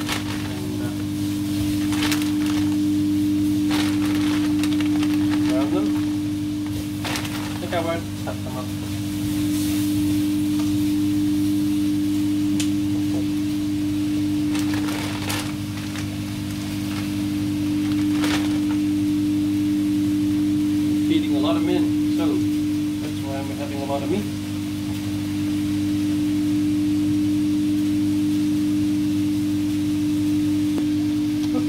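A steady low electrical hum from a kitchen appliance, holding one pitch throughout. A few short crackles of a plastic bag being handled come through it.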